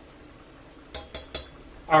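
Three light, quick clicks about a second in, fingertips pressing the touch controls of a glass-top electric hob to switch it off.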